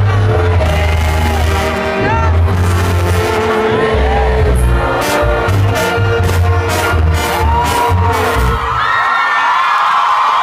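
Live banda music played loud: a pulsing tuba bass line under brass and a lead singer, with sharp drum and cymbal hits in the middle. The bass stops near the end while voices carry on.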